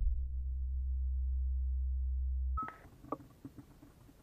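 A steady low hum that cuts off suddenly about two and a half seconds in, giving way to a faint hiss with a few light clicks.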